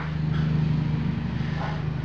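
Steady low mechanical hum from a running machine, with a sharp click at the very start.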